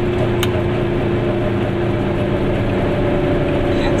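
Goggomobil's air-cooled two-stroke twin engine running steadily at cruising speed, heard from inside the small car's cabin together with tyre and road noise.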